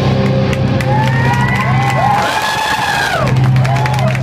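Live rock band holding a sustained, droning chord without drums, with high tones gliding up and down over it, and a crowd cheering.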